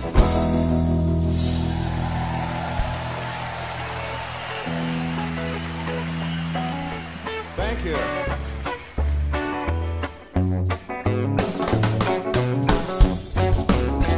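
Live rock band: a closing drum and cymbal hit, then a held chord on electric guitar and upright bass rings out and slowly fades. About halfway through, a new song starts with a rhythmic bass and guitar line, and the drum kit joins a couple of seconds later.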